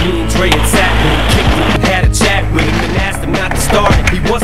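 Hip-hop music with a beat, mixed with skateboard sounds: urethane wheels rolling on concrete and the board clacking and grinding on concrete ledges during tricks.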